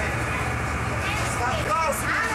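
Indistinct voices of people talking nearby, clearest in the second half, over a steady low hum.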